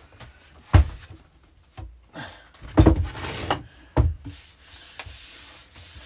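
Wooden shoe rack knocking and scraping as it is set down and shifted into place: a sharp knock about a second in, a cluster of knocks and scrapes in the middle, and one more knock a second later. A soft rubbing follows near the end.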